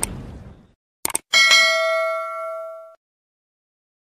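Subscribe-button animation sound effects: a whoosh fading out, two quick mouse clicks about a second in, then a bright bell ding that rings on for about a second and a half and dies away.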